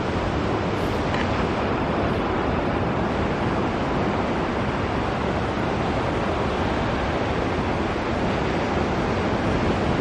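Steady rushing of wind and surf, even throughout, with a faint low hum underneath.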